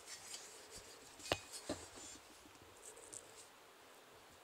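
Faint rustling and handling noise as wheat stalks and ears brush against the phone and ruler, with a soft knock about a second in and a smaller one just after.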